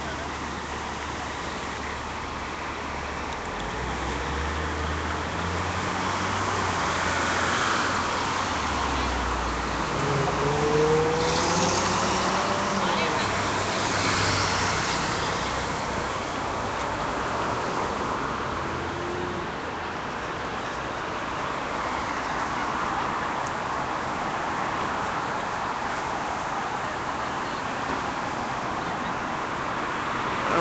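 Street traffic: motor vehicles passing, with a heavier engine rumble building a few seconds in and a rising engine note partway through, over a steady background hum.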